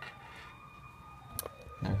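Quiet room tone with a faint steady high-pitched whine, broken by one sharp click about one and a half seconds in; a man's voice begins right at the end.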